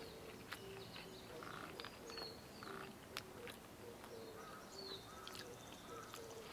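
Faint birdsong: scattered short chirps and a couple of falling whistles, with soft clicks of chewing close by.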